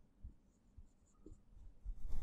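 Faint strokes of a marker writing on a whiteboard, otherwise near silence.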